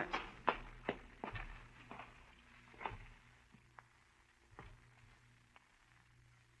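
Radio-drama footsteps sound effect: a series of steps walking away, growing fainter over the first five seconds.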